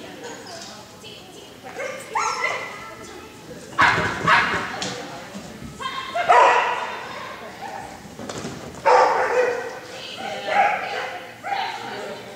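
A dog barking repeatedly in sharp, pitched barks, the loudest about four, six and nine seconds in, echoing in a large indoor arena.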